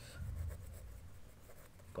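Ballpoint pen writing on paper: faint scratching strokes as a word is written out by hand.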